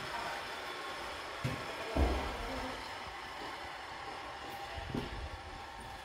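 A few dull thumps, the loudest about two seconds in, over a steady background rumble.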